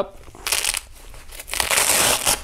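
Hook-and-loop (Velcro) fastener on a nylon plate carrier's front flap being peeled open: a short rasp about half a second in, then a longer, louder rip from about a second and a half on.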